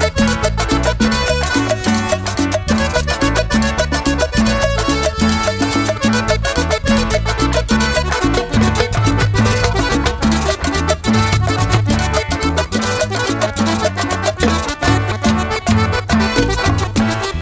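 Live cumbia band playing an instrumental passage: piano accordion over electric bass, timbales and drums, with a steady, even dance beat.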